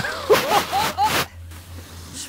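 Skis scraping and hissing over packed snow in a few rough bursts during the first second or so, with short wordless vocal calls among them. It then drops to a quieter hiss.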